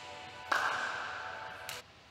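Short musical transition sting. A sudden swoosh-like hit comes about half a second in over a held chord, fades, then cuts off abruptly near the end.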